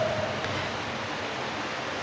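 A steady, even hiss of background noise with no other sound in it.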